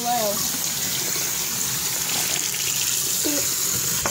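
Water running steadily from a sink tap as hands are washed, shut off at the end.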